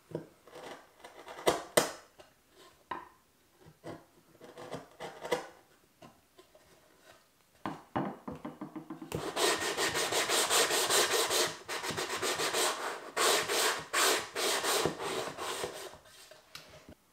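A chisel paring a plywood box corner, with a few short scraping cuts. From about halfway in comes a steady run of quick back-and-forth strokes of hand-sanding along the plywood edge, the loudest part.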